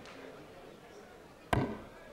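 A single sharp knock about one and a half seconds in, over quiet hall ambience.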